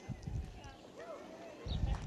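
Low dull thumps and rumble on a handheld microphone, the strongest near the end, over faint background voices.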